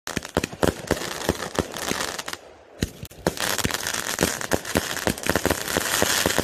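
Aerial firework shells bursting with many sharp bangs over dense, continuous crackle, with a brief lull about two and a half seconds in.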